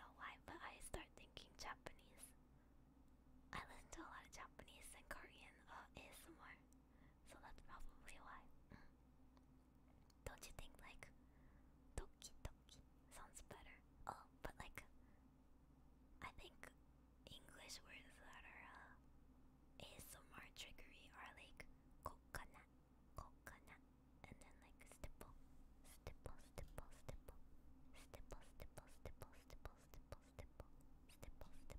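A woman whispering softly close to the microphone, with many small clicks scattered through it.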